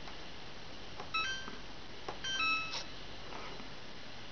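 Samsung washing machine control panel beeping as its buttons are pressed: two short electronic beeps about a second apart, the second a little longer, each just after a faint button click.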